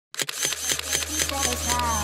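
Rapid burst of camera shutter clicks, about eight a second, over a low steady hum, with pitched tones coming in near the end: a camera-themed intro sound effect.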